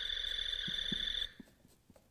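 A Buzz Lightyear toy's electronic sound effect: a steady, high electronic tone lasting just over a second that cuts off suddenly, followed by a few faint handling clicks.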